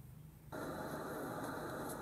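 A steady rushing noise with a faint high whine, starting suddenly about half a second in.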